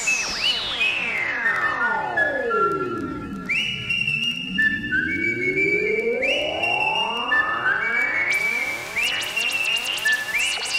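Drum and bass breakdown led by a layered synthesizer tone. It dives steeply in pitch over about four seconds, then climbs back up over the next five. Short high synth notes repeat over it, and high percussion comes back in near the end.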